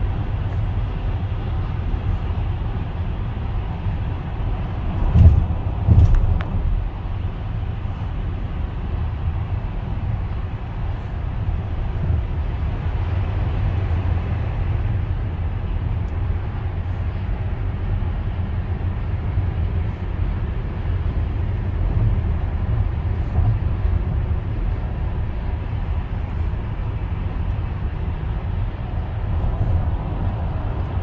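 Steady low road and engine rumble heard inside a moving car's cabin, with two loud thumps about five and six seconds in.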